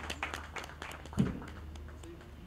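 Scattered hand-clapping from a small seated group, thinning out and fading, with a brief low bump about a second in.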